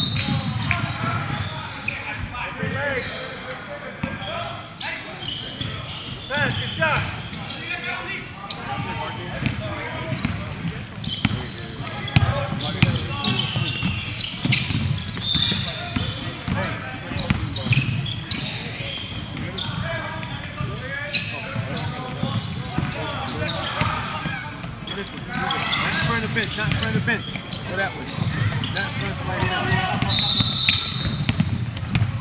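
A basketball being dribbled on a hardwood gym floor during a game, under a steady background of indistinct voices from players and onlookers in a large hall.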